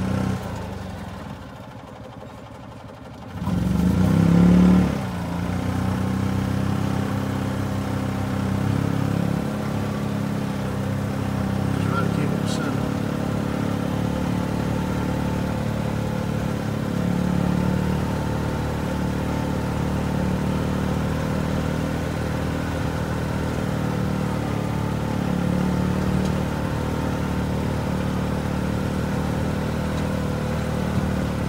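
Golf cart engine running steadily under the load of a towed sprayer. It drops away about a second in, then revs back up in a rising whine about four seconds in, its loudest moment, and settles into a steady drone.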